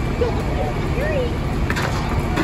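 Steady low rumble of a fire truck's diesel engine running, with indistinct distant voices and a couple of short knocks near the end.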